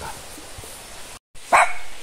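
A dog barking in agitation: one short, loud bark about one and a half seconds in, after a second of low background and a brief cut-out of the sound.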